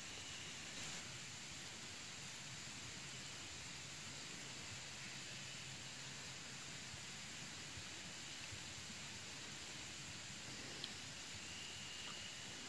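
Faint, steady background hiss with no distinct sound in it, and a single faint click near the end.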